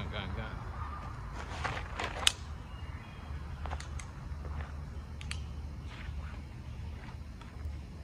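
Handling noise from drawing a North American Arms Mini revolver with a clip grip from a trouser pocket: light rustling, one sharp click about two seconds in, then a few fainter clicks, over a low steady rumble.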